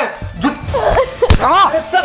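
A single sharp slap of a hand striking a person, a little past halfway through, amid shouting voices.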